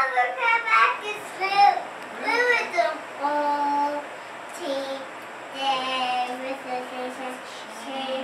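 A young boy singing a song, with a few long held notes.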